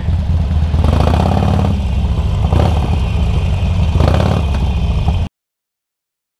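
Harley-Davidson Forty-Eight Sportster's air-cooled 1200 cc V-twin running at low speed in slow traffic, a loud steady low rumble with a few brief swells. The sound cuts off suddenly a little after five seconds in.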